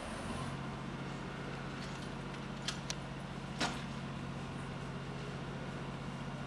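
Steady low hum of an idling engine that comes in just after the start, with a few short sharp clicks a little past the middle.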